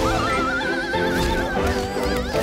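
Cartoon soundtrack: background music under a high, wobbling, whinny-like wail that holds for about a second and a half and then breaks off.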